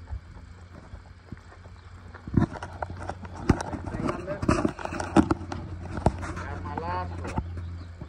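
Ridden horse moving across a sand pen: scattered knocks of hooves and tack, irregular and about a second apart, from about two seconds in, over a steady low hum. An indistinct voice comes in near the end.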